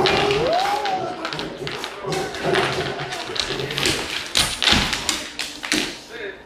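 Two dogs, a cane corso and a pit bull, play-wrestling on a hardwood floor: a run of taps and thumps from paws, claws and bodies hitting the boards. There is a brief rising-then-falling cry in the first second.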